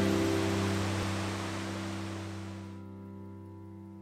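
Background music's last chord held and fading out.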